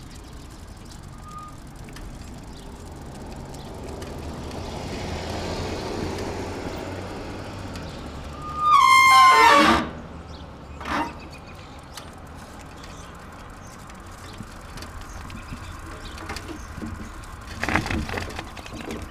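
A car passes on the road, its tyre and engine noise rising and fading over a few seconds. About nine seconds in comes the loudest sound, a loud pitched cry lasting about a second and sliding down in pitch, followed shortly by a brief sharp noise.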